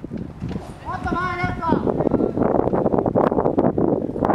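A person's high-pitched shouted call, about a second long, from about a second in, over a steady rumble crackling with many small clicks.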